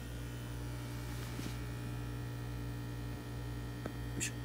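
Steady electrical mains hum from fish-room aquarium equipment, with a faint tick near the end.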